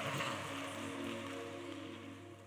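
Congregation clapping, the applause thinning and fading out over a soft held musical chord.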